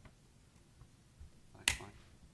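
A single sharp click near the end, over quiet room hum.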